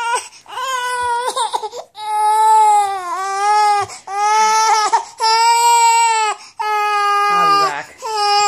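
A seven-month-old baby crying in a tantrum: a string of about six long, loud wails, each lasting about a second, with short breaths between them.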